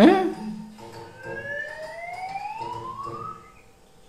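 A short loud vocal exclamation from the comedy clip, then a single whistle-like sound effect rising slowly in pitch for about two and a half seconds.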